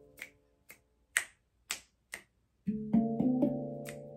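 Five sharp finger snaps, about half a second apart, in a pause between notes. About two-thirds in, several steel handpan notes are struck by hand in quick succession and ring on, slowly fading.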